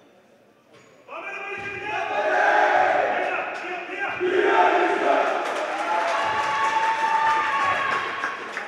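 A group of young basketball players shouting and chanting together in a team huddle, a victory cheer after a win. It starts suddenly about a second in and goes on as loud overlapping voices with a few long held calls.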